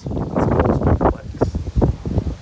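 Wind buffeting a phone microphone, a low rumble that dies away about a second in, followed by two short knocks.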